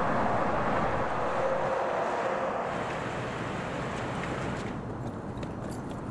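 Steady mechanical rumble and hiss of outdoor background noise, slowly growing fainter toward the end.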